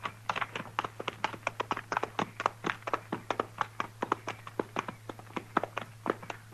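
Horses' hooves at a walk, a radio-drama sound effect: quick, slightly irregular clopping at about seven beats a second over a faint steady hum.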